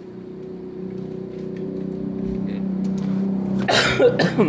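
A steady engine hum that grows louder, with a plastic bag crinkling as it is handled and set down near the end.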